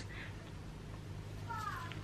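A faint animal call falling in pitch about one and a half seconds in, over a steady low hum.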